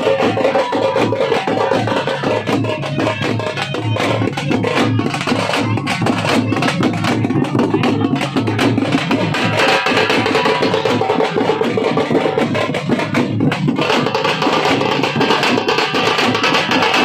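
Folk procession drums beaten with sticks in a fast, continuous rhythm, with a steady held note beneath the strokes.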